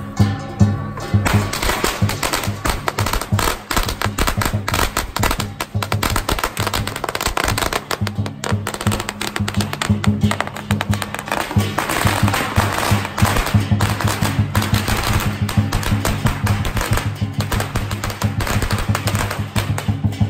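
A string of firecrackers going off in a rapid, unbroken crackle of pops, starting about a second in and running until near the end, over guitar music.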